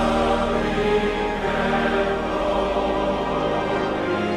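A hymn sung by many voices with instrumental accompaniment, sustained notes moving steadily through a verse.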